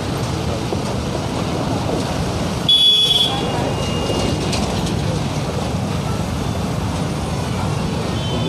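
Traffic noise from vehicles backed up in a jam: engines running steadily. About three seconds in comes a brief, loud, high-pitched sound.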